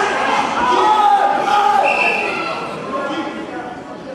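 Spectators shouting and calling out in a large, echoing hall, many voices overlapping, with one high held shout about two seconds in; the noise dies down over the last second or two.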